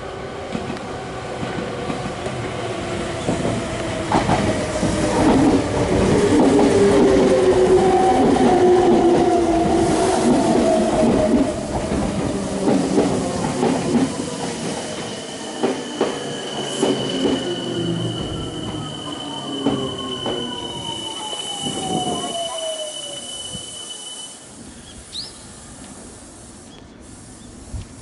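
Meitetsu 3700 series and 3100 series six-car electric train running into the station and slowing to a stop. It is loudest as it passes about 6 to 10 seconds in, with a motor whine falling steadily in pitch as it brakes, scattered wheel clicks, and a high steady squeal over the last several seconds. It settles quieter once stopped, a few seconds before the end.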